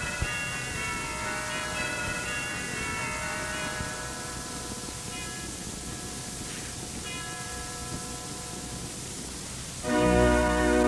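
Soft held chords on the Mitchell Hall pipe organ, played back from an old tape recording under a steady tape hiss, with a sharp click just after the start. The chords change every second or two, and right at the end the organ comes in much louder with a full bass.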